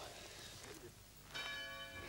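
A single bell struck about a second and a half in and left ringing, one clear chime held steady.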